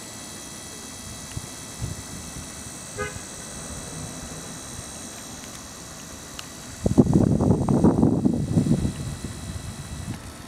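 A Polaroid pocket photo printer running, with a louder whirring rattle for about two seconds near the end as it feeds out a print, over a steady background hiss.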